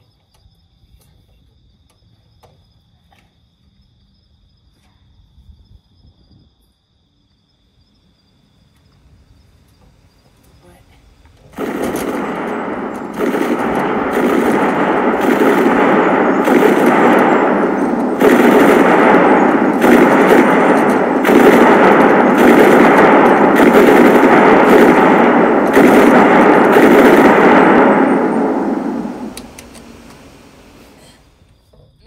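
Quiet with a faint steady high insect chirping, then about eleven seconds in, loud, dense machine-gun fire starts suddenly. It runs in long sustained bursts, growing louder in steps, and fades out near the end.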